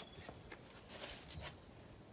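Faint rustling as fans of bird feathers are handled and held out as wings, under a thin steady high-pitched tone that stops about a second and a half in.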